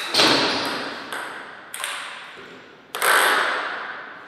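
Table tennis ball and bat knocks in a reverberant hall: four sharp clacks, each ringing on in an echoing tail, the loudest at the start and about three seconds in.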